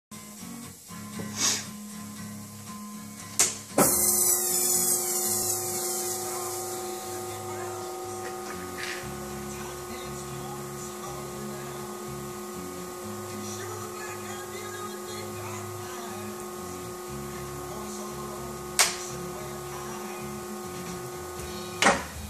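Clutch pressure plate and flywheel assembly spinning on a dynamic balancing machine for an imbalance reading: a few handling clicks, then a sudden start about four seconds in that settles into a steady multi-tone whine and hum. A sharp click near the end as the drive cuts off.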